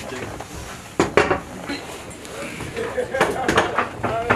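Sharp metal clanks and clicks of litter and litter-rack hardware being handled: two close together about a second in, then several more near the end, with low voices in between.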